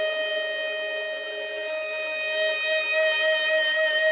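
A flute holding one long, steady note, with a quieter lower note sustained beneath it.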